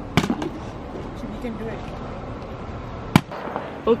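A plastic water bottle tossed and landing on concrete pavement, two short sharp clacks: one just after the start and a louder one about three seconds in.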